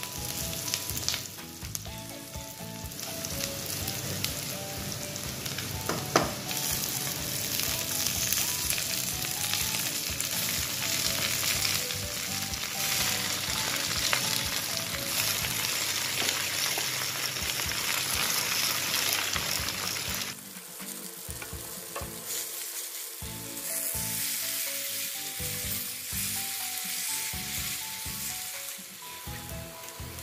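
Chopped onion and garlic, and then water spinach leaves, sizzling in oil in a metal pan while stirred with a wooden spatula. The sizzle falls away for a few seconds about two-thirds through, then picks up again.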